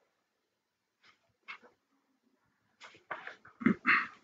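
A dog making a few short vocal sounds, spaced apart and loudest near the end.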